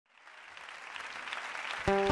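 Audience applause fading in, then a guitar chord struck just before the end as the song begins.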